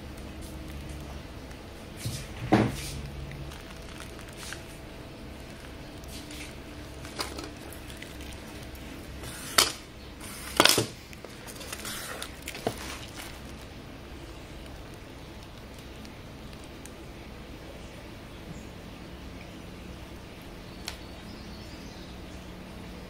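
A few sharp clicks and knocks from hands working over a table, the loudest about two and a half seconds in and two more around ten seconds, with a steady low hum underneath.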